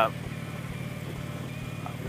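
Harley-Davidson touring motorcycle's V-twin engine running at a steady cruise, heard as a low, even hum.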